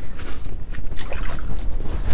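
Wind rumbling and buffeting against the ice shelter and microphone, with splashing in the ice hole as a bluegill is released back into the water.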